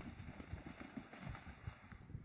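Faint outdoor background: wind on the microphone, with low irregular rumbles.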